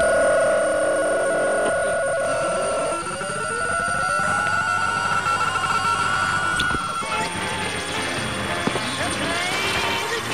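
Radios being tuned between stations: a steady high whistle with a lower steady tone that stops about three seconds in, a tone gliding upward until about seven seconds, then the whistle cuts off into a jumble of broadcast voice and music fragments.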